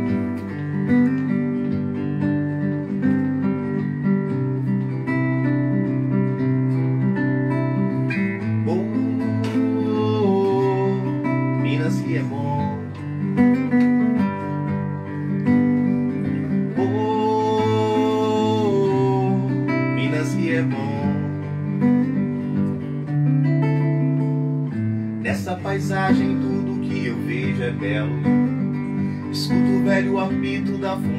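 Acoustic guitar playing a song's instrumental introduction: steady chords with a melody line over them that slides between notes.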